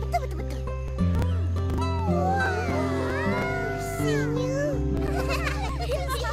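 Cartoon soundtrack: background music with sustained low notes, with high voices gliding up and down in pitch over it, busiest in the middle.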